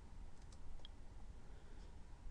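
Faint computer mouse clicks, a few soft ticks around half a second to a second in, over quiet room tone.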